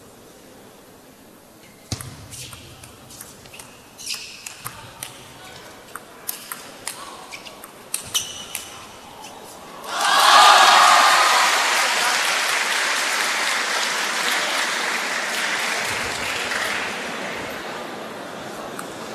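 A table tennis rally: the ball knocks off bats and table in an irregular run of sharp clicks for about eight seconds. At about ten seconds the hall's crowd breaks into loud cheering and applause that slowly dies away.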